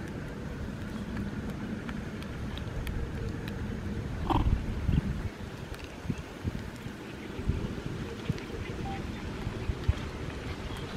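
Wind rumbling on the microphone, with one short, high call from a baby macaque about four seconds in.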